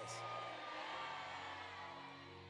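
Soft background music of long held notes under a pause in prayer. A faint wash of noise fades away over the first second or so.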